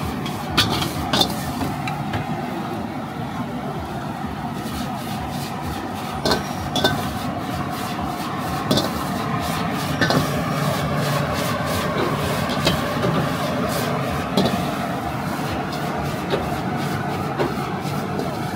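Metal ladle clanking and scraping against a wok as rice noodles are stir-fried, sharp strikes every second or so, over the steady rushing noise of the gas wok burner.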